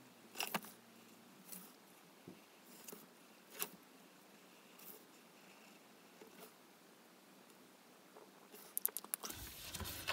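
Faint, scattered ticks and light scratches of an alcohol marker's tip moving over paper as a drawing is outlined. Near the end comes a quick flurry of clicks and rustling as the marker is lifted and the paper is handled.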